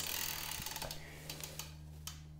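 Bicycle drivetrain ticking and clicking as the crank is moved by hand after a shift to the small chainring. The clicking is dense at first and thins out about halfway through.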